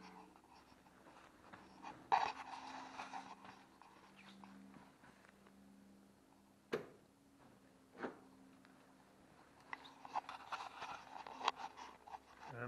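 Quiet rustling and handling noises with two sharp clicks about a second and a half apart near the middle, over a faint steady hum.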